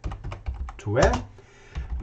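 Computer keyboard typing: a quick run of keystrokes in the first second as a word is typed, then a few more near the end.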